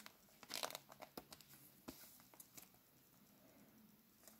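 Faint crinkling and rustling of baseball cards and foil card-pack wrappers being handled: a few soft crackles in the first two seconds, then near silence.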